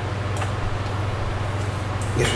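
Steady low hum, with a sharp click about half a second in and a fainter click near the end.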